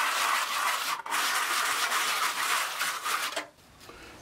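A hand tool scraping over fresh, wet cement render on a wall during the finishing pass. Two long rubbing strokes with a short break about a second in; the sound stops shortly before the end.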